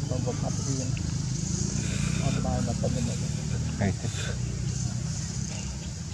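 Faint human voices talking over a steady low motor rumble.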